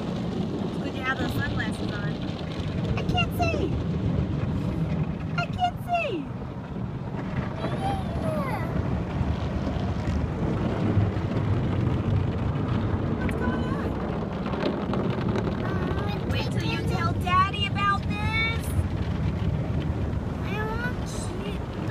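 Automatic car wash heard from inside the car: a steady low rush of water spray and wash machinery on the body. A child's short high vocal sounds come over it several times, most of them near the end.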